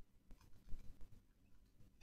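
A few faint, short clicks of computer keys over quiet room tone.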